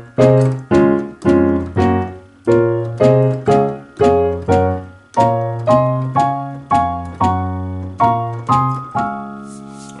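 Digital piano playing a gospel chord progression in C-sharp: C-sharp, F-sharp, B minor and A-flat chords, struck about twice a second. About halfway through the chords move higher up the keyboard, and the last chord is held and rings out.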